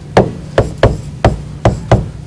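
Stylus tapping and clicking on a tablet screen while handwriting a fraction: six sharp clicks at uneven spacing, one for each pen stroke.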